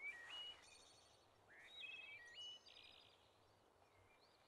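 Faint birdsong: short whistled phrases of notes that step up and down in pitch, with quick trills, once at the start and again about a second and a half in.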